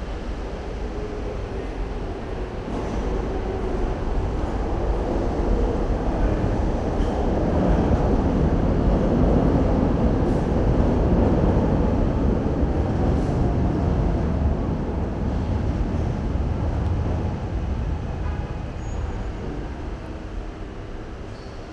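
Elevated train passing on the steel structure overhead, heard from the street below as a rumble that builds for several seconds, is loudest about halfway through, then dies away, over steady street traffic.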